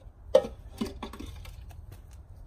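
A handful of light clicks and taps in quick succession, from gardening things being handled.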